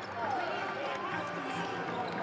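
Several basketball players' voices shouting and chattering over each other on the court as they celebrate a game-winning shot, fainter than the broadcast commentary.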